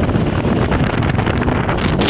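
Wind buffeting the microphone over the running diesel engine of a BTR-80 armoured personnel carrier on the move, a loud, steady, unbroken rumble.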